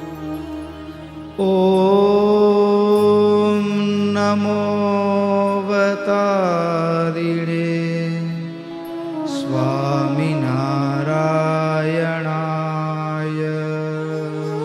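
A man chanting a Sanskrit verse in a slow, sung style, holding long notes that glide down about six seconds in and waver near ten seconds, over a steady drone.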